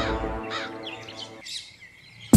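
Background score fading out, with a short run of small bird chirps over it between about half a second and one and a half seconds in.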